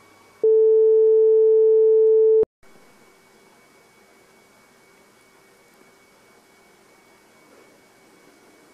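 A loud, steady electronic sine-wave beep like a test tone, held at one mid pitch for about two seconds and cut off abruptly, followed by faint hiss and a low steady hum.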